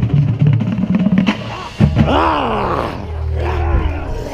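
Drum corps music with drums playing, while people laugh and shout over it; a loud voice bends down and back up in pitch about two seconds in.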